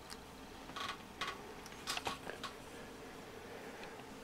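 A few faint clicks and rustles of handling, spaced irregularly through the first half, with quiet room tone between them.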